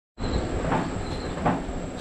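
Treadmill running: the steady rumbling hum of its motor and belt, with a soft thud about every three-quarters of a second from footfalls on the belt during a walking cool-down.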